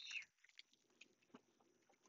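Near silence, with a brief faint rustle at the very start and a few faint clicks.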